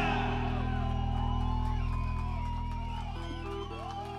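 A live rock band's last chord ringing out after a final hit and fading slowly, low notes held steady. Over it come many short high whistle-like glides that rise and fall.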